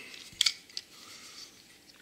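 Handling noise from a die-cast toy fire truck being turned over in the hands: one sharp click about half a second in, a fainter click just after, then soft rubbing.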